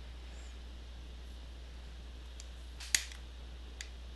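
Arrow RH200 hand riveter setting a short pop rivet: one sharp metallic snap about three seconds in, followed by a lighter click shortly after.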